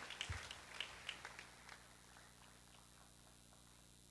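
Scattered hand claps from a congregation, thinning out and dying away within the first two seconds, then near silence with a faint steady hum.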